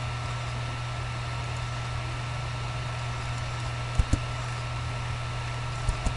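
Computer mouse clicking twice in quick succession, twice over: about four seconds in and again near the end. Under the clicks runs a steady low hum with hiss.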